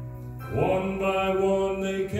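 A man singing a gospel song into a microphone over backing music; about half a second in he starts a long held note.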